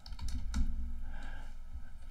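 A few light computer keyboard keystrokes and clicks over a low, steady hum.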